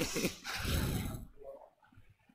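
A person laughing briefly, a short breathy laugh that dies away after about a second into near quiet.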